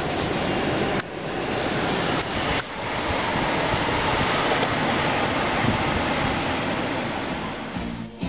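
A steady rushing noise, cut by two sudden brief drops, about one second and about two and a half seconds in.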